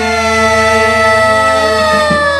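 A long held note from the live campursari band, a single sustained pitch sliding slowly downward over a steady low bass hum, as the music comes to a close.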